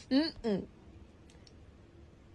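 Two short vocal sounds from a person in quick succession, each with a sliding pitch, followed by low room sound with a few faint clicks.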